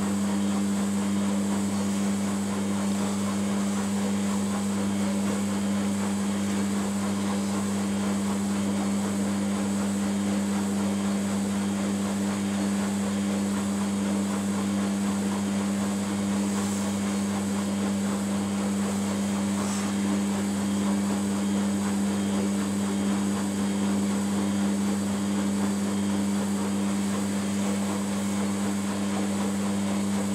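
Samsung WF80 front-loading washing machine running mid-cycle on a 40° daily wash, giving off a steady low hum with no change in level.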